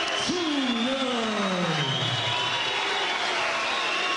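Arena crowd cheering and applauding the announced winner, under a man's long drawn-out call whose pitch falls steadily over about two seconds.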